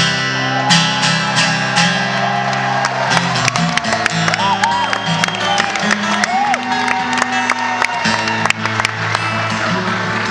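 Acoustic guitar played solo: a loud strummed chord at the start, then chords and picked notes ringing on with regular strums.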